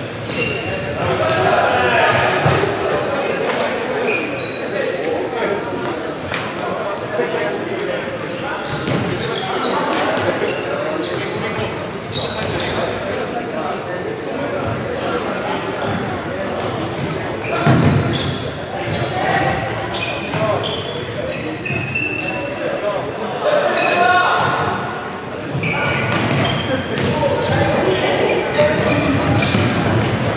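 Futsal game play in a large, echoing sports hall: the ball thudding off feet and the wooden floor amid players' shouts and calls.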